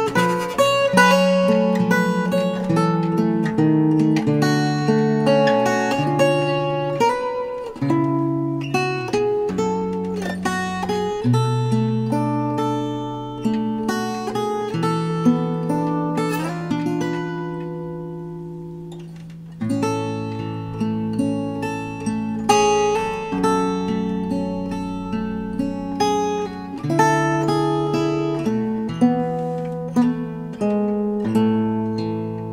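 Solo fingerstyle playing on a 1956 Gibson LG-1 acoustic guitar with a capo: a slow ballad of picked melody notes over held bass notes. A little past halfway a chord is left ringing and fades for about four seconds, then the picking starts again.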